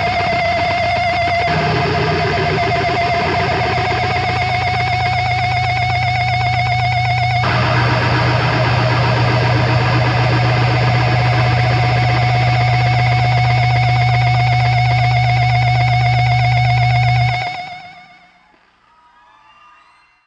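Sustained distorted electric guitar feedback and amplifier drone from a guitar left resting against its amp, a steady low hum under a wavering higher tone. The pitch shifts twice, then the sound cuts off near the end and dies away.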